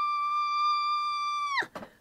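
A woman's high-pitched, acted scream of labour pain, held on one steady note for about two seconds and then breaking off with a falling pitch near the end.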